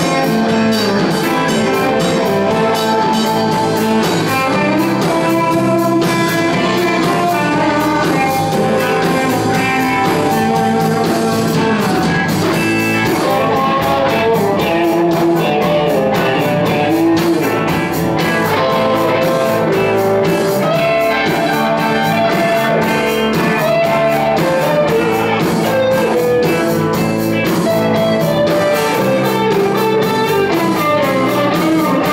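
Live electric blues band playing: electric guitars over bass guitar and a drum kit, with a steady beat.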